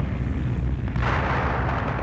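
Battle sound effects under archival footage: a steady low rumble of distant combat, with a rushing swell of noise rising about a second in, a distant explosion or artillery blast.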